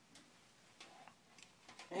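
Quiet room tone with a few faint, short ticks scattered through it.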